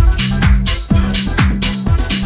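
Tech house dance music from a DJ mix: a four-on-the-floor kick drum about twice a second, bright off-beat hi-hats between the kicks, and a steady bass line.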